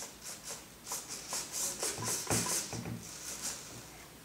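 Servos on a T-Rex 250 electric helicopter driving the swash plate in a string of short, quiet whirring bursts, several a second, as the flight controls are worked with the motor unpowered.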